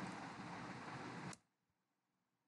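Faint, steady hiss of microphone and room noise that cuts off suddenly about one and a half seconds in, leaving dead silence.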